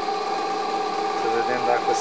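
Electric motor driving a homemade generator, made from a 0.75 kW water-pump motor, with a 9 kg flywheel on the shaft: a steady hum with several constant whining tones from the spinning machines, running under a load of light bulbs.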